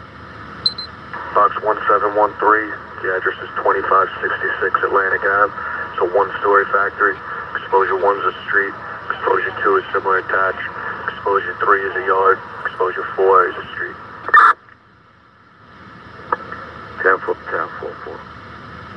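An emergency-services scanner radio relaying dispatch voice traffic, the voices thin and band-limited. About fourteen and a half seconds in, one transmission ends with a short squelch burst, then there is a second or so of quiet before the next voice comes in.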